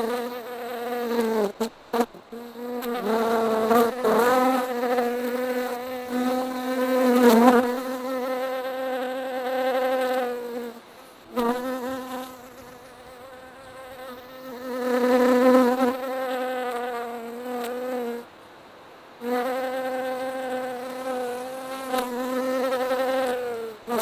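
Honeybees buzzing in flight close to the microphone: a steady, pitched buzz that comes and goes in stretches of several seconds, its pitch bending up and down at times, with short breaks near the middle and about three-quarters of the way through.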